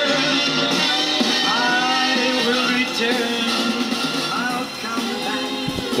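Music with singing playing from a vinyl LP on a Soundesign 6848 stereo's record player, turned up loud and heard through the system's single connected speaker.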